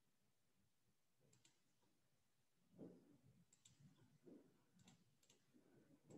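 Near silence with a few faint computer mouse and keyboard clicks and soft desk taps, most of them in the second half.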